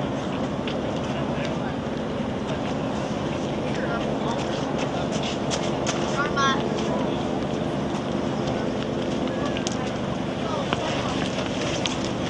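Steady outdoor background noise with faint, indistinct voices of other people around, a few brief pitched snatches standing out now and then.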